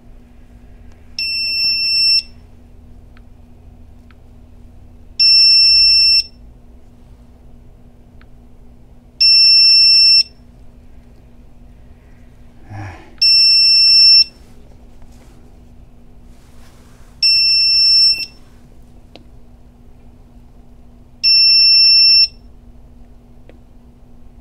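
Begode EX30 electric unicycle's built-in buzzer beeping six times, each a steady one-second high tone, about every four seconds.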